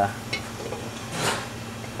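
Faint sizzle of a tablespoon of oil heating in a pan on a gas burner, over a low steady hum, with a short hiss about a second in.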